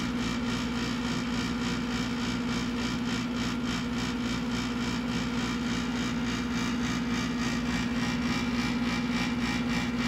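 A steady mechanical hum and whir with one strong low tone, unchanging throughout.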